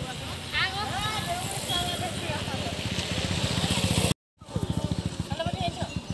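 Road traffic with a motorcycle engine running past, its rapid, even pulsing growing stronger through the first four seconds, over voices of people along the road. The sound cuts out completely for a moment about four seconds in, then the engine pulsing carries on.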